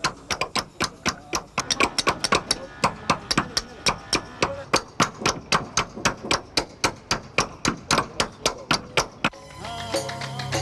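Hammers striking caulking irons in rapid, steady strokes, about four or five a second, driving oiled cotton wick into the seams between a wooden dhow's hull planks. Music comes in near the end.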